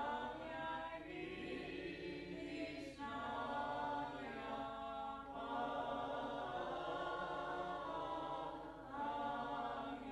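A choir singing unaccompanied in a slow liturgical chant, long held chords in several voices with brief breaks between phrases.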